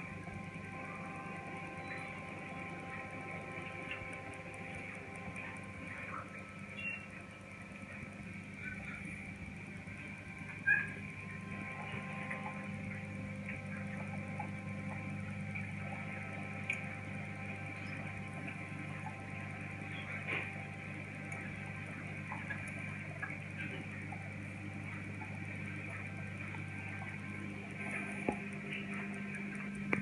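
Reef aquarium equipment, its pumps and light fixture, giving a steady electrical hum with a few faint clicks and knocks, the clearest about eleven seconds in.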